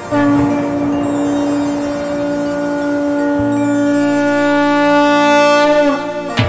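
A conch shell (shankh) blown in one long, steady note lasting nearly six seconds, sagging in pitch as the breath runs out, with a low drone coming in about halfway through.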